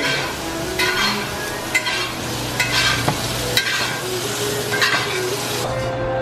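Steak frying in a hot pan: a steady sizzle with scattered sharp crackles and spits, over a low steady hum.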